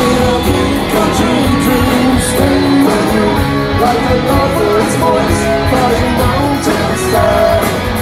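Live rock band playing at full volume, with electric and acoustic guitars over bass and drums, recorded from within the crowd.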